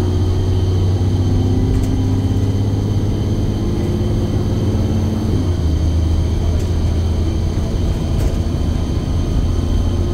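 Alexander Dennis Enviro400 double-decker bus engine heard from inside the lower deck while being driven hard: a loud, deep drone whose pitch climbs, drops about halfway through at a gear change, and climbs again.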